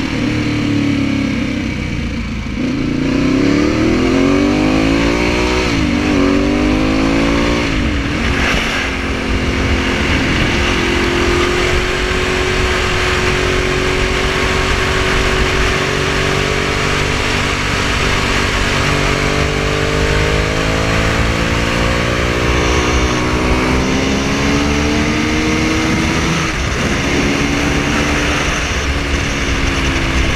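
Ducati 1098 sport bike's engine heard from the rider's seat, pulling up through the gears in the first few seconds with short breaks at the shifts, then holding a steady pitch at part throttle, and climbing again later with another shift near the end. Wind noise runs under it.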